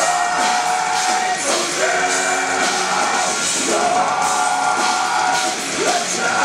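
Melodic death metal band playing live in a hall: distorted guitars, bass and drums under long held melody notes, a new note about every second and a half.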